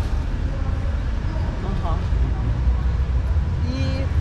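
Steady low rumble of outdoor background noise, with a few short spoken sounds about two seconds in and near the end.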